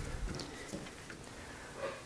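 Quiet workshop room tone with a soft low thump at the start and a few faint clicks, as tooling is handled at a lathe chuck.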